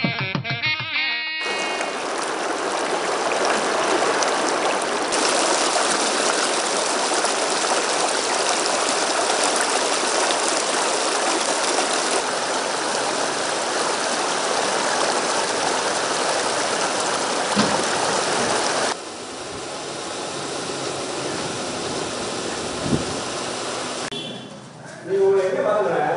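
A short bit of music, then the steady rush of river water pouring over rocks below a barrage, somewhat quieter for the last few seconds.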